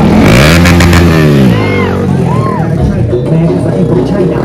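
Motorcycle engine revving as it passes close by: its pitch rises and then falls over the first second and a half. Short rising-and-falling calls follow, over a steady low hum.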